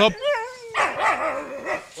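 Rottweiler in a kennel vocalizing: a short wavering, whining call, then a longer rough, warbling call with a pitch that wobbles up and down.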